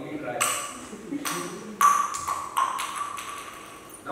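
A series of about six sharp pings, each leaving a short ringing tone at the same pitch.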